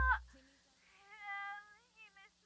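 The song's last chord cuts off, then a cat meows: one longer meow, rising and falling in pitch, about a second in, and a short one near the end.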